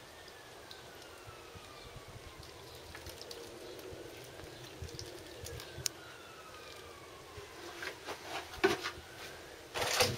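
A faint siren wailing slowly up and down, over and over. Scattered clicks and short knocks run alongside it, growing louder and more frequent near the end.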